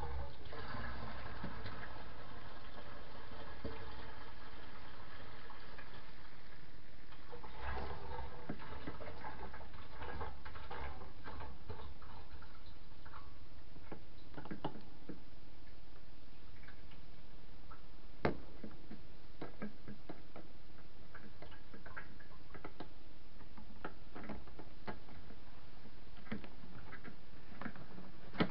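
Petrol being poured from a container into a Honda CBR600RR's fuel tank. The pouring is fullest in two spells in the first half, then grows fainter, with scattered light clicks and one sharper tick partway through.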